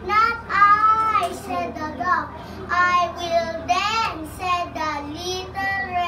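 A young child's high voice reciting the story's lines in a singsong, chanting way, with words not made out.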